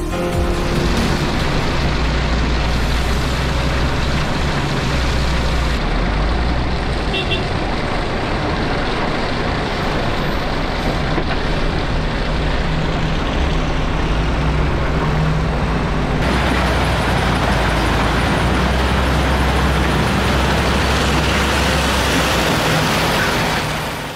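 Heavy diesel machinery running steadily at a wheel loader's loading of a tipper trailer, a continuous low rumble under a wash of mechanical noise.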